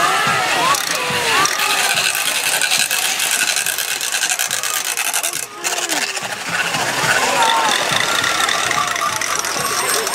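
Rapid rattling clatter from hand-held carnival noisemakers, with whoops and shouting voices over it. The clatter is densest in the first half and breaks off briefly around the middle before picking up again.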